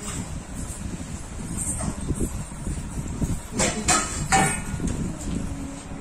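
Stainless steel plates and bowls clinking as they are handled, three sharp ringing clinks a little past the middle, over a steady low rumble.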